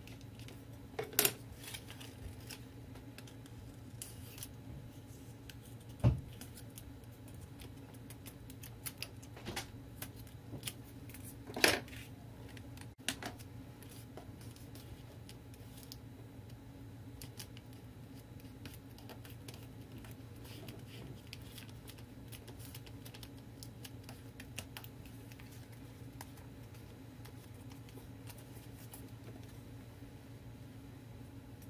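Scissors and paper being handled on a craft table: sharp clicks about a second in and again about twelve seconds in, a low thump around six seconds, and faint scattered snips and ticks, over a steady low hum.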